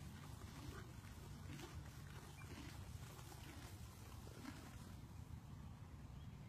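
Faint, irregular crunching of a horse chewing a mouthful of hay, over a low steady hum.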